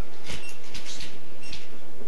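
Footsteps and shuffling as a man steps up to a lectern: several soft knocks and a couple of short squeaks, over a steady background hiss.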